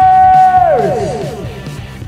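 A man's long, high shout of "Niners!" held on one pitch, then falling away in pitch about three-quarters of a second in, with fading echo repeats. Rock music with a steady beat runs underneath.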